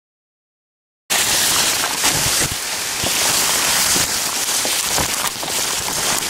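Silent for about the first second, then suddenly loud, dense rustling and crackling of tall energy-millet stalks and leaves brushing against the camera as someone pushes through the stand on foot.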